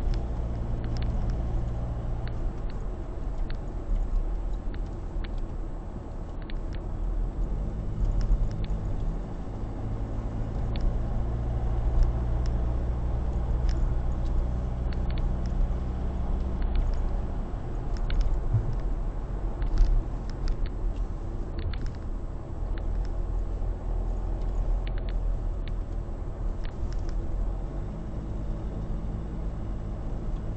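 Car engine hum and tyre road noise heard from inside the moving car. The low engine note steps up and down in pitch a few times with changes of speed, and faint scattered ticks sound over it.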